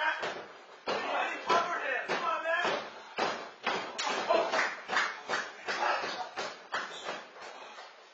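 Wrestlers' feet and bodies hitting a wrestling ring's canvas-covered floor: a rapid, uneven run of thuds and smacks, two or three a second.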